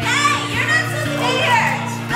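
A woman calling out in Vietnamese in a lively, high voice over background music with steady sustained notes.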